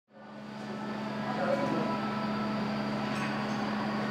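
A steady low mechanical hum under a background hubbub, fading in over the first second or so and then holding level.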